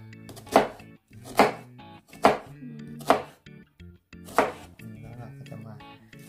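Chef's knife slicing through an onion on a wooden cutting board: five cuts about a second apart, each a sharp knock of the blade on the board, then a pause near the end.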